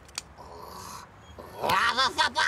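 A cartoon rabbit character's loud wordless yell, bursting out near the end after a quieter stretch with a faint hiss.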